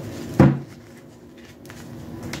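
A single sharp knock on a wooden tabletop about half a second in, as a tarot deck is handled and shuffled, followed by quieter card handling.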